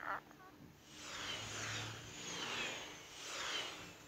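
Cartoon sound effects of several wheel-shaped ride-in vehicles rolling past one after another: three swells of whooshing, whirring noise, each with a falling pitch as it goes by.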